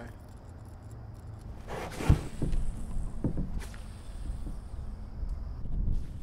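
Handling noise in a kayak: a sharp thump about two seconds in, with a brief rustle before it and a few lighter knocks after, over a steady low rumble.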